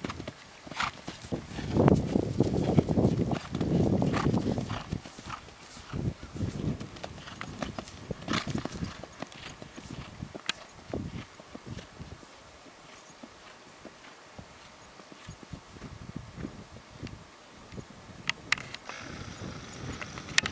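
Hoofbeats of a barefoot half-Appaloosa, half-Thoroughbred mare cantering on a dirt arena. They are loudest in the first few seconds, then fade as she canters away.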